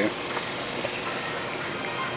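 Steady running noise from a home-built rotisserie's electric gearmotor and roller-chain drive turning the spit.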